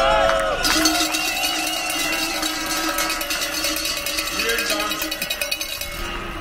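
Many cowbells rung rapidly and unevenly by a protest crowd, starting about a second in, with a steady horn-like tone held underneath.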